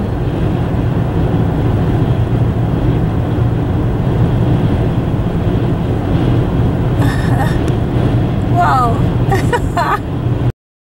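Steady road and engine noise of a car driving at highway speed, heard from inside the cabin, with a constant low drone.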